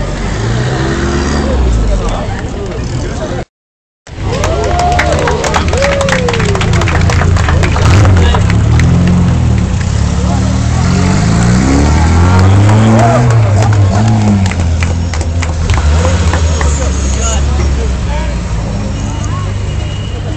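Vintage car engines running and revving as the cars pull away one after another, mixed with crowd voices close by. The sound cuts out completely for about half a second a few seconds in.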